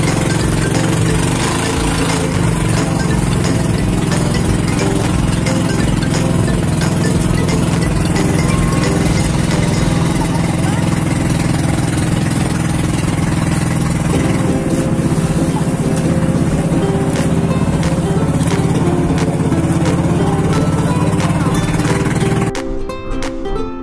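Outrigger boat's engine running steadily under way, a loud, even drone whose pitch steps to a new level about two-thirds through.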